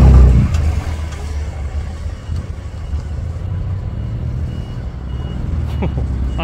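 Customised BMW M4's twin-turbo straight-six exhaust, loud at first as a rev dies away within the first half second, then settling to a steady low rumble as the car rolls slowly past.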